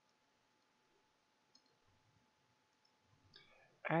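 Near-silent room tone with a faint steady hum, broken by a faint single click about one and a half seconds in and a few fainter ticks, like a computer mouse click as the lecture slide advances.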